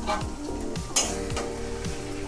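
Chicken gravy sizzling in a kadai while a spatula stirs and scrapes the pan, with a sharp scrape about a second in. Background music with a steady beat plays throughout.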